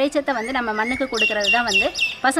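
A bird calling outdoors: a quick run of about five high chirps a little past halfway, heard over a woman talking.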